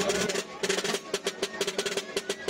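Background music with quick, closely spaced percussion strikes over a held tone.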